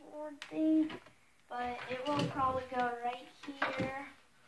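Speech only: a person talking, with a couple of brief clicks among the words.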